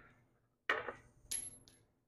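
Two light knocks about half a second apart as a small metal part is dropped onto the wooden workbench. The second knock is followed by a brief high metallic ring.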